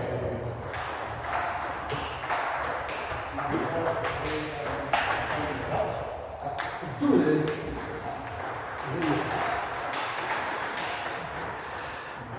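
A table tennis ball knocked back and forth in a doubles rally: a steady run of sharp clicks off the paddles and the table, irregularly spaced. A voice calls out about seven seconds in.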